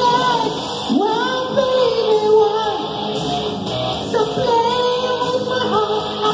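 A man singing a hard-rock cover into a handheld microphone over a backing track. About a second in, his voice slides up into long held notes.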